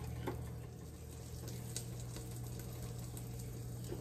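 A sandwich frying in butter and oil in a lidded grill pan: a faint, muffled sizzle with scattered small crackles, over a steady low hum.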